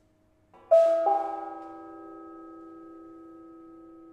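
Hanging metal percussion struck twice with mallets, a third of a second apart, under a second in. Several bell-like pitched tones ring on together and slowly fade over a faint held tone.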